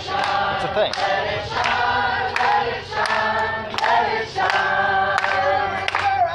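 A group of people singing together in unison, a slow run of held notes changing about every half second to a second.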